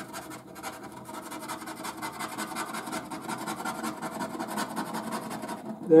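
A coin scraping the silver scratch-off coating from a paper scratchcard in rapid, steady back-and-forth strokes.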